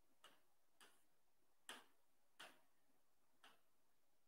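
Near silence broken by five faint, sharp taps at uneven intervals, the loudest near the middle: fingertips tapping an interactive whiteboard's touchscreen while picking from its colour palette.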